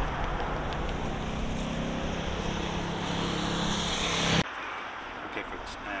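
Turbofan engines of a KC-135 tanker running on the runway, a steady jet noise with a hum that grows louder, then cut off suddenly about four and a half seconds in.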